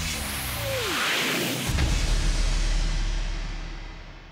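Title-card sound effect: a whoosh with a falling tone, then a deep low hit a little under two seconds in, whose rumble slowly dies away.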